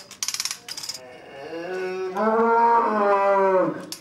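A Montbéliarde cow in labour, lying in the straw, gives one long low moo lasting about two seconds, starting around the middle. It is preceded in the first second by rapid metallic clicking.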